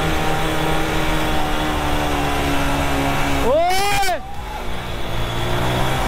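Motorcycle engine running steadily while riding in traffic. About three and a half seconds in, there is one brief rise and fall in pitch.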